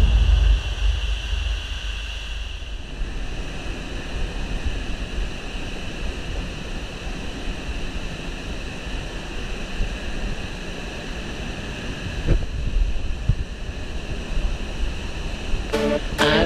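Steady rushing of a waterfall pouring into a rock pool, with a faint held musical tone over it.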